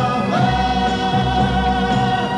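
French pop song: a male singer holds one long note over the band's accompaniment.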